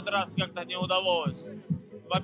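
A young man speaking Russian in a TV interview over club dance music with a steady kick-drum beat; his voice pauses near the end.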